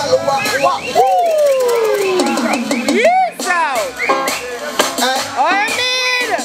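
A man singing live into a microphone over a backing track with drums, his voice sliding through long swooping notes, one long falling note about a second in, with no clear words.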